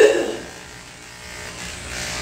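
Electric dog grooming clippers fitted with a Wahl Competition Series #7 blade running with a steady buzz as they cut through a schnauzer's coat, opening with a brief louder burst.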